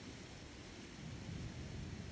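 Wind buffeting the microphone over a steady hiss, the low rumble growing a little stronger partway through.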